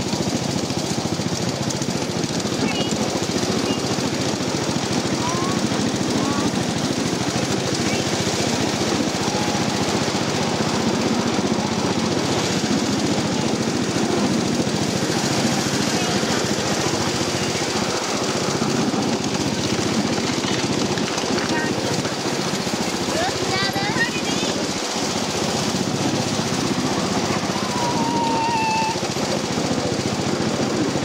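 Miniature 7½-inch gauge train running, its riding cars giving a steady, rapid rattle on the track.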